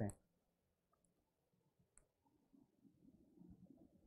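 Near silence: room tone with a faint low hum and a couple of tiny clicks, about one and two seconds in.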